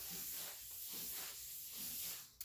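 Paper towel wiping across a wet tabletop in repeated back-and-forth strokes: a soft rubbing hiss.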